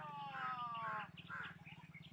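Birds calling, crows among them: a drawn-out call falling in pitch in the first second, then shorter calls. A steady low hum runs underneath.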